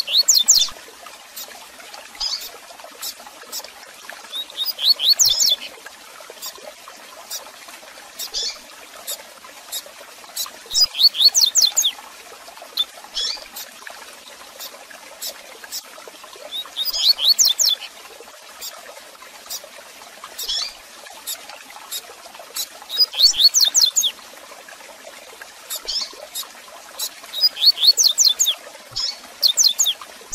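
Double-collared seedeater (coleiro) singing its 'tui tui zel zel' song: a short phrase of quick high notes repeated about every six seconds. Single sharp chirps fall between the phrases, over a steady faint hiss.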